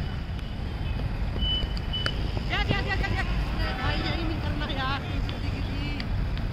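Voices calling out some distance away, heard for a few seconds in the middle, over a steady low rumble. A short, thin high tone sounds a little before the voices.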